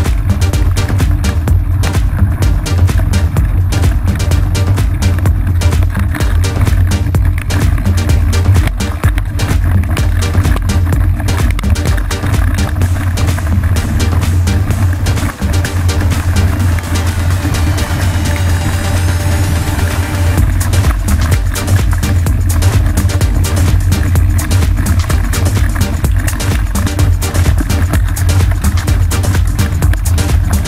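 Background electronic dance music with a steady beat and heavy bass. A rising sweep builds a little past halfway and then drops back into the beat.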